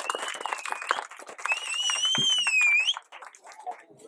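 Applause: many people clapping, with a shrill whistle over it in two long wavering notes, the second rising at its end. The clapping and whistling die away about three seconds in.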